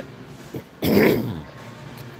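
A man clears his throat once, about a second in: a short, rough burst.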